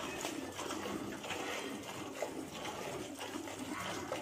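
Milk squirting by hand from a Gir cow's teats into a steel pail: short hissing streams about two to three a second.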